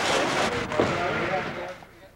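Indistinct voices talking over steady background noise, fading out near the end.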